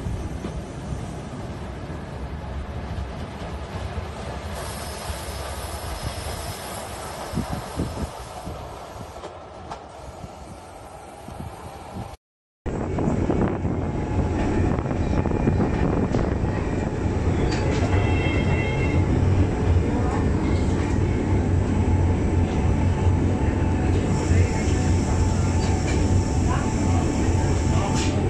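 Electric rack-railway train of the Monte Generoso line: a fainter running sound, cut off suddenly about twelve seconds in, then a louder steady ride noise with a low hum from inside the moving carriage.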